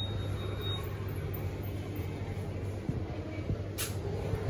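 Steady low hum and background noise of a shop interior, with a faint high tone in the first second and a brief hiss just before the end.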